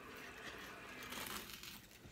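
Faint crunching and crackling as a table knife saws through the toasted bread of a sandwich.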